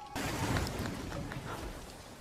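Fire flaring up with a sudden crackling rush that fades away over the next second and a half, with a few sharp crackles along the way.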